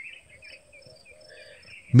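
Faint ambience of insects chirping in quick, repeated short chirps, with a faint steady high tone under them.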